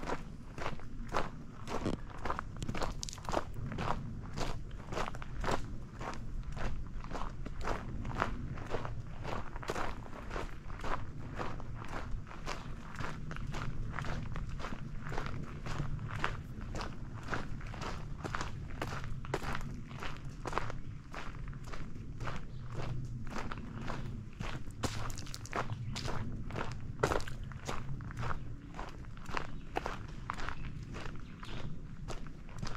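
Footsteps of a person walking at a steady pace on a dirt forest trail, about two steps a second.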